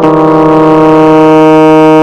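Electronic portable keyboard holding one long sustained note with no new notes struck, over a steady drone from two keys wedged down.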